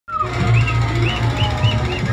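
Loud music from a truck-mounted loudspeaker system, with a heavy steady bass and a short high melodic figure repeating about three times a second.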